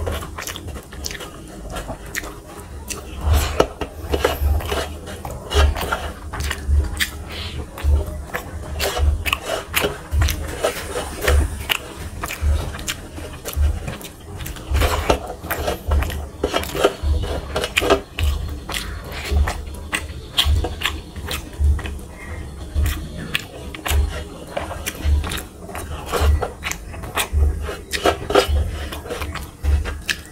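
Close-miked chewing and wet mouth sounds of a person eating rice and fish curry by hand, with sharp smacks and clicks and low thumps about once or twice a second.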